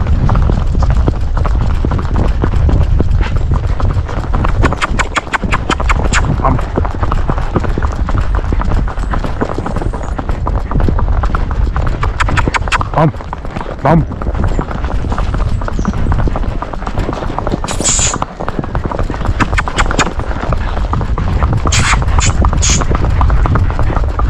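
Rapid, even hoofbeats of a young pinto paso horse on asphalt as it pulls a light cart, over a steady low rumble.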